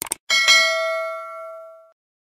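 Notification-bell sound effect: two quick clicks, then a bell ding that rings out and fades over about a second and a half.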